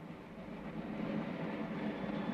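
A low, steady rumbling drone from the film soundtrack that slowly grows louder.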